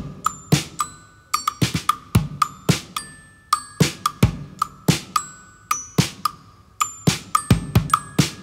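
A live indie-rock band playing the instrumental opening of a song: strummed acoustic and electric guitars and keyboard over a steady percussive beat, with sharp hits about two to three times a second and no singing.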